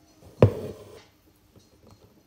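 A single knock with a short ringing tail about half a second in, from handling the embroidery work while pulling the thread through.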